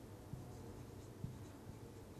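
Faint sound of a marker writing on a whiteboard, with a couple of soft taps.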